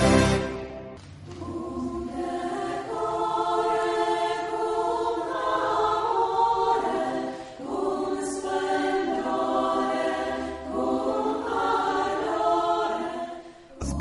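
The last moment of a theme tune, then a small mixed choir singing in harmony. The choir holds long, sustained phrases, with short breaks about seven and a half and ten and a half seconds in.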